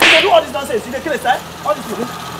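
A sudden sharp swish-like burst at the very start, like a whip crack or a quick smack, followed by a few brief, quieter vocal sounds.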